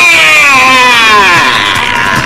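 A long, wavering wail that slides down in pitch over about two seconds and fades near the end, from a comedy film soundtrack.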